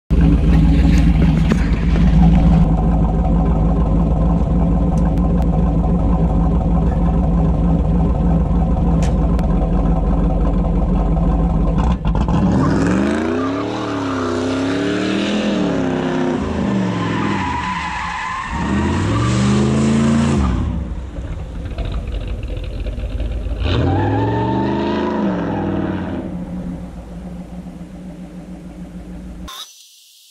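Third-generation Chevrolet Camaro's engine running steadily for about twelve seconds, then revved up and down several times in a burnout with the rear tires spinning and squealing. A shorter rev follows about two-thirds of the way through before the engine settles back to a steady run.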